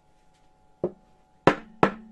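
Carved wooden gingerbread mold knocked face down against the table to free the pressed dough: three sharp wooden knocks, a lighter one first and then two louder ones about a third of a second apart.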